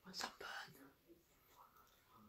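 A person whispering, faint and brief, in the first second.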